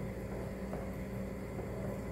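A spatula stirring thick cassava broth in a pot, faint and soft, over a steady low hum.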